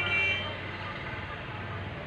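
A brief high two-tone beep right at the start, then a low steady hum.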